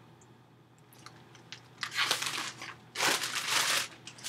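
Plastic packaging crinkling and rustling as it is handled, in two loud bursts about two and three seconds in.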